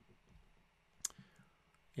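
A pause with faint room tone, broken by a single sharp click about a second in.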